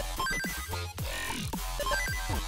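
Electronic music with a steady beat, repeated falling synth sweeps and short bright bleeps.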